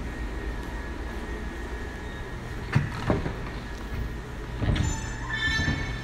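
Steady mechanical hum of indoor machinery, with two sharp knocks about three seconds in and a brief high-pitched squeal about five seconds in.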